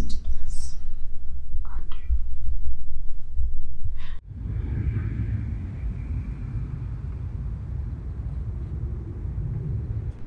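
A loud low rumble with faint whispered breath sounds, cutting off abruptly about four seconds in. Then comes a quieter, steady low hum of city street traffic.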